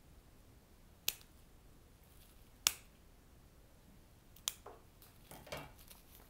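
Floral snips cutting stems: three sharp, separate snips about a second and a half apart, then a softer scrunch of handled foliage near the end.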